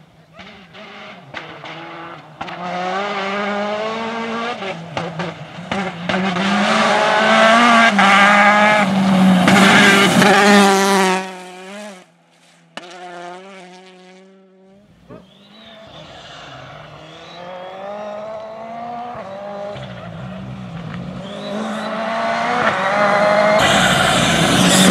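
Rally car engines on a gravel stage: one car is heard approaching and revving hard, its pitch rising and falling with gear changes, until the sound drops away suddenly just before halfway. A second rally car, a Ford Fiesta R5, then approaches, its engine growing steadily louder to the end.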